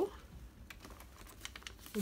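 Faint, irregular light clicks and rustles of a sealed plastic-and-paper sterilization pouch, with a dental file holder inside, being handled.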